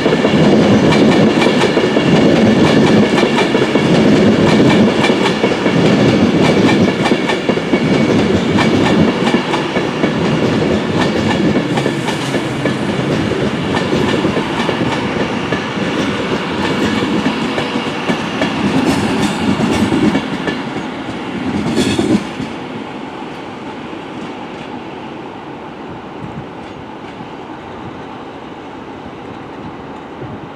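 Avanti West Coast Class 390 Pendolino electric train running past the platform: a loud rumble and clatter of wheels on rail, with a few steady high-pitched tones over it. The noise drops sharply about 22 seconds in, leaving a quieter steady rumble.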